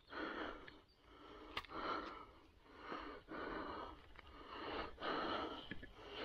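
A man breathing close to the microphone: about five breaths in and out, roughly one a second. A faint click comes about one and a half seconds in.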